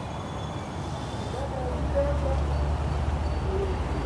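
Busy city street traffic: a motor vehicle's engine rumble builds up about a second and a half in and holds, over the general street noise, with a few short low tones on top.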